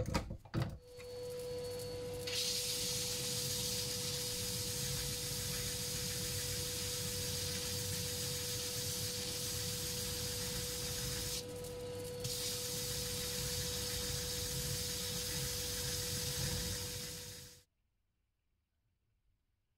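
A few knocks at the start, then a wood lathe runs with a steady whine while a pussy-willow and resin ring is pressed by hand against a spinning sanding disc, giving a loud, even sanding hiss. The hiss drops away for under a second about two-thirds through as the piece comes off the disc, and all sound cuts off suddenly near the end.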